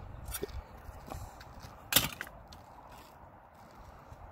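Handling of a manual caulking gun loaded with a glue tube: a few light clicks, then one sharp clack about two seconds in, over a low background rumble.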